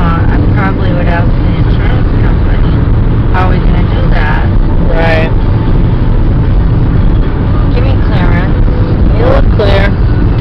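Road and engine noise inside a car's cabin while driving at freeway speed: a steady low rumble, with a voice heard in a few short phrases over it.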